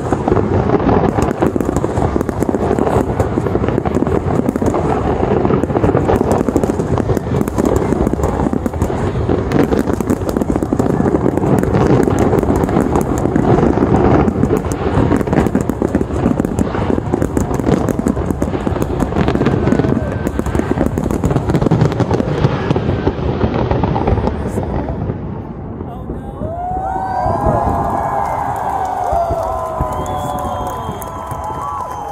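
Fireworks finale: a dense, continuous barrage of shell bursts and crackling that dies away about 25 seconds in. A crowd of spectators then cheers and whoops.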